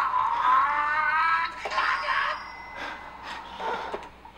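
A man's voice in the anime soundtrack shouting one long, drawn-out cry of frustration, then a few short words.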